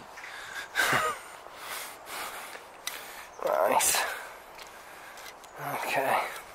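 A man's breaths and sighs close to the microphone, three short ones a couple of seconds apart, the middle one partly voiced.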